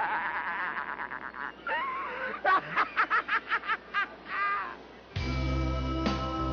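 A person laughing in quick, repeated bursts of 'ha-ha' that trail off. About five seconds in, music with a strong bass line cuts in abruptly.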